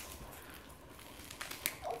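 Quiet room with faint handling noise: two soft clicks about a second and a half in as a small packaged item is pulled from a felt Christmas stocking.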